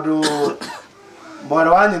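A short cough in the middle of a man's speech, with his talking before and after it.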